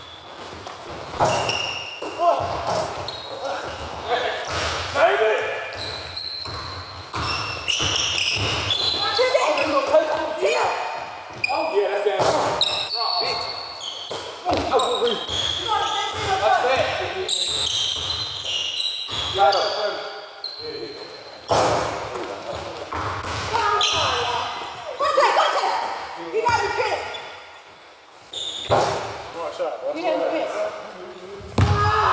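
Basketball bouncing repeatedly on a hard court during a half-court game, with players' voices calling out over the play.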